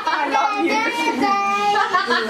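Voices singing, with long held notes.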